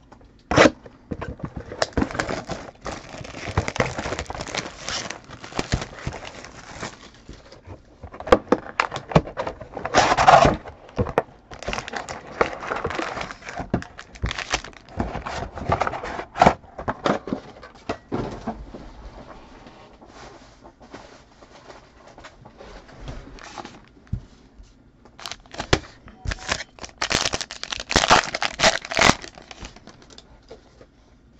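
Trading-card box and foil card packs being handled and torn open: several bursts of tearing and crinkling, with sharp clicks and taps between them, loudest about ten seconds in and near the end.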